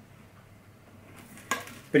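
Hands threading a nylon string through the bridge of a classical guitar: faint handling sounds, then one sharp tap on the guitar about a second and a half in.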